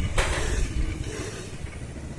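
Low rumbling wind and road noise on a phone microphone while a tricycle rolls along, with a short rush of noise just after the start, then easing off.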